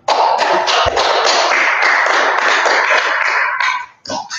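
Audience applauding, starting all at once and dying away near the end.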